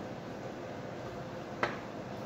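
A single sharp click about one and a half seconds in, over a steady faint room hiss.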